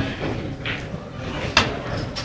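Pool balls being struck on a pool table during a shot: a softer knock about two-thirds of a second in, then one sharp click about one and a half seconds in.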